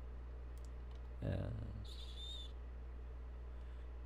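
Faint clicks of a computer keyboard and mouse as shortcut keys are pressed and the mouse is worked, over a steady low electrical hum. A short scratchy sound comes about two seconds in.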